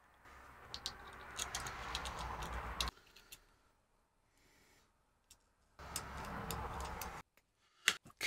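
Light clicks and ticks of metal tweezers, small M3 screws and nuts against a clear acrylic part as the nuts are fitted onto the screws. They come in two stretches, the first about three seconds long and the second shorter near the end, with a faint low hum beneath them.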